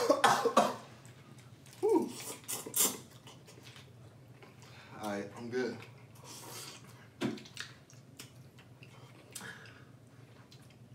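A man coughing and making short wordless vocal sounds as the heat of very spicy noodles hits him, loudest right at the start, with a few faint clicks of a fork against a plastic bowl later on.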